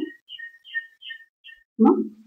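A bird chirping faintly in the background: a run of about six short, high chirps over a second and a half, between snatches of speech.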